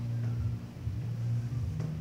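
A steady low hum, with no speech over it.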